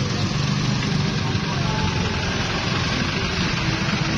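The engine of a decorated Isuzu open-sided passenger vehicle running at low speed close by, a steady low drone under general outdoor noise.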